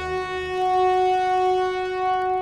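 Orchestral French horns holding one long, steady note. A low bass layer under it fades out about half a second in.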